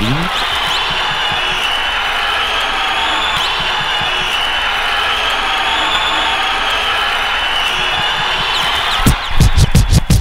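A large crowd cheering and shouting in a steady, muffled roar, a sampled rally-crowd recording in a hip-hop intro. A hip-hop beat with heavy bass comes in near the end.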